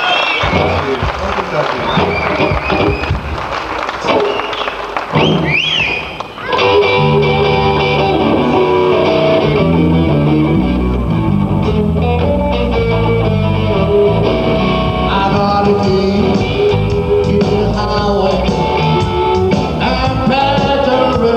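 Live blues band with electric guitars, bass guitar and drum kit playing. Bent high lead notes over lighter backing open the passage; after a brief drop about six seconds in, the full band comes back louder with a stepping bass line under it.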